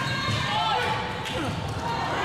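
Basketball dribbled on a hardwood gym floor, amid the voices of players and spectators.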